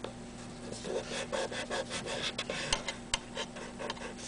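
Fingertips rubbing tape down firmly over a BGA chip on a circuit board: a run of short, irregular scratchy strokes starting under a second in, with a couple of sharper clicks near the middle.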